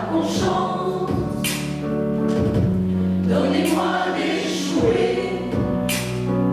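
Mixed choir of women's and men's voices singing together, holding long sustained notes with a few sharp sibilant consonants.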